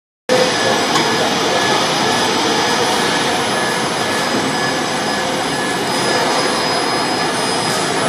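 Steady whirring noise of automated warehouse machinery, a pallet stacker and its conveyors running, with a few faint steady tones over it at an unchanging level.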